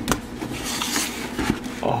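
Cardboard box lid rubbing and scraping as it is slid up off the box, with a few light knocks.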